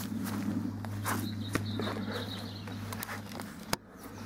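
Handling noise from a handheld laser rangefinder being held up against a camera lens: a few soft, irregular knocks and rustles, with a sharper click near the end, over a steady low hum.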